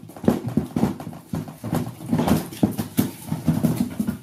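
Sound effect of mangoes dropping into a basket: a quick, irregular series of hollow knocks and thuds.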